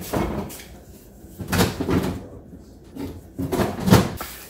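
Seasoning containers handled over a stainless steel salad bowl: a sharp knock at the start and another near the end, with short rustling, scraping bursts in between.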